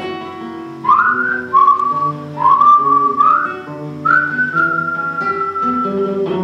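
Acoustic guitar playing an instrumental passage with a whistled melody over it, each whistled note scooping up into pitch; about five whistled phrases, the last held long.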